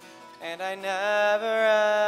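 A man singing a worship song with acoustic guitar. After a quiet first half-second, the voice comes in and holds one long, wavering note.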